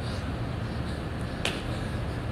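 A person doing burpees on a concrete floor: one sharp slap about one and a half seconds in, as he comes up out of the plank, over a steady low hum.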